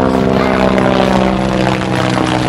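Helicopter sound effect: a loud, steady engine-and-rotor drone.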